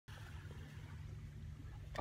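Faint outdoor ambience at a lake shore: a steady low rumble under a soft hiss.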